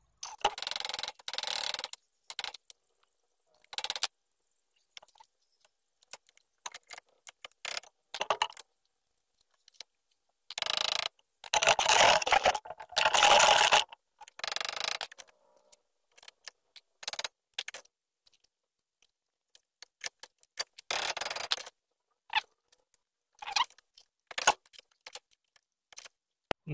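Intermittent clinks, rattles and scrapes of aluminium brackets and metal tools being handled at a bench vise, in short irregular bursts with quiet gaps between them.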